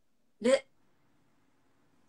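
A woman's voice giving one short syllable, "ru", that rises sharply in pitch, about half a second in; otherwise faint room tone.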